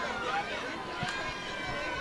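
Swim-meet spectators cheering and shouting for the swimmers: many distant voices overlapping in a steady crowd din.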